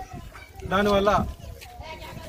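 A man's voice holding one long, drawn-out vowel for about half a second, about a second in, between pauses in his speech.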